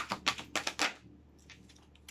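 A deck of cards shuffled by hand: a quick run of crisp card clicks and slaps for about the first second, then a few faint ones.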